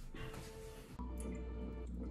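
Small aquarium air pump running with a steady low hum that starts about a second in, pushing air through an airline tube so it bubbles up through a jar of phytoplankton culture.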